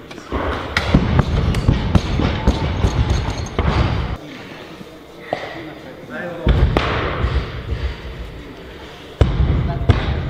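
Rubber bumper plates and steel barbells thudding down onto wooden lifting platforms and rattling, in bursts about half a second in, around six and a half seconds and near the end, with the echo of a large hall.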